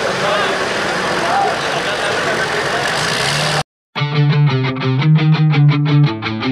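Diesel pickup truck engine idling with crowd voices around it, cut off abruptly about three and a half seconds in. After a brief silence, rock music with electric guitar starts.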